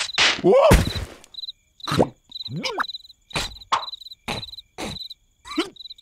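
Crickets chirping in short regular bursts, about two a second, as night ambience. Several brief squeaky cartoon-character vocal noises cut in over them.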